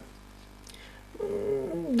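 Quiet courtroom room tone, then a little over a second in a woman's drawn-out hum-like voice, sliding down in pitch and running into her spoken "да" at the end.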